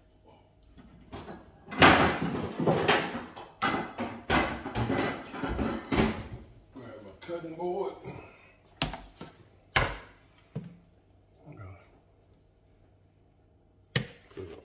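Kitchen handling noises: a busy run of knocks, clatters and rustling, loudest about two seconds in, then a few single sharp knocks near the ten-second mark before it goes quiet.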